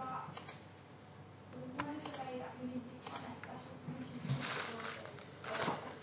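Scattered sharp clicks and taps of a computer keyboard and mouse at irregular intervals, under low mumbled speech.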